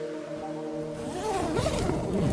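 Background music with sustained tones; from about a second in, the white fabric cover of a snow sled rustles as a person steps into it.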